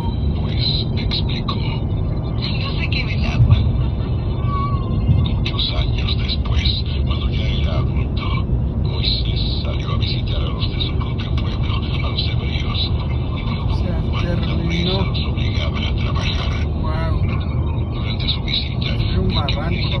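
Steady road and tyre noise inside a car cabin at highway speed, with muffled voices talking over it throughout.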